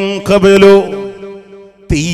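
A man chanting Qur'anic verses in a melodic recitation, holding long notes with small turns. The phrase fades out about one and a half seconds in, and the next one begins just before the end.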